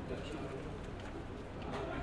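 Quiet background with faint distant voices and a few light clicks.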